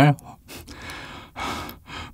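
A man's audible breathing close to the microphone: a longer sigh-like breath followed by a shorter one, with no voice in them.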